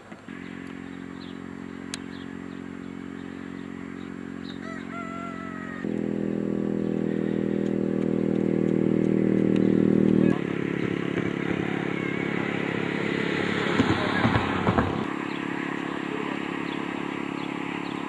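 A motor vehicle's engine running steadily at a constant pitch. It gets suddenly louder about six seconds in and changes abruptly about ten seconds in. A few knocks and a burst of rustling noise come around fourteen seconds in.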